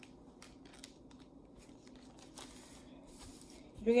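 Faint, sparse light clicks and rustles of hands handling parachute string and the plastic canopy on a tabletop.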